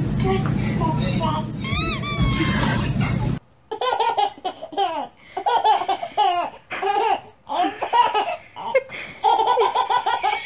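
A baby laughing in short, repeated bursts of belly laughter from about three and a half seconds in. Before that, background music with a single high squeal that rises and falls, about two seconds in.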